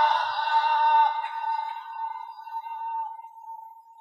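A man's voice in melodic Quran recitation holding one long high note at the end of a verse. The note fades slowly, thinning to a faint steady tone by the end.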